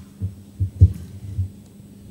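A few dull, low thumps on a microphone, about four in just over a second with the loudest near the middle, like handling or bumping noise. They sit over a steady low hum.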